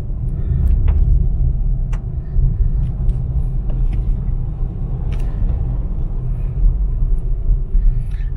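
Steady low rumble of a moving car's engine and tyres heard from inside the cabin, with a few faint clicks.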